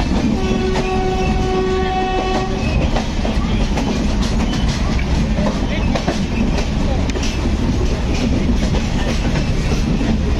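Running noise of a moving train: a steady rumble with wheels clattering over rail joints and points. A train horn sounds once for about two seconds just after the start.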